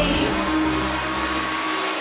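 Drum and bass DJ set at a breakdown: the drums drop out, leaving a steady rushing noise sweep over a few held synth tones, with the bass fading away toward the end.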